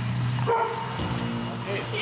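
Search dog giving a short bark about half a second in, then a drawn-out whine: the dog is alerting to a find.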